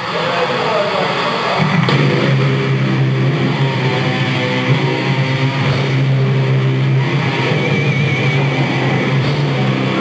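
Live rock band playing through a PA, with distorted electric guitars and drums, loud and somewhat muddy as picked up by a camcorder in the hall. The band fills out and grows heavier about a second and a half in.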